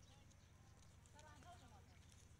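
Near silence: faint, distant voices rise briefly about halfway through, over a low steady hum.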